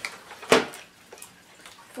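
A cardboard box set down on a table: one sharp knock about half a second in, followed by faint handling noise.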